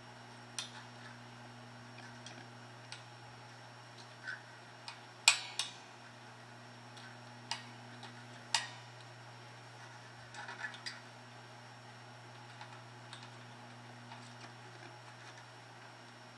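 Soldering iron tip and copper desoldering braid working against a steel guitar tremolo claw: scattered sharp clicks and small ticks at irregular intervals, the loudest a little past five seconds in, over a steady low hum.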